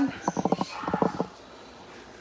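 A woman's voice making two short runs of rapid, creaky pulsing sounds, like a low chuckle or a hesitant 'mmm', in the first second or so. Quiet room tone follows.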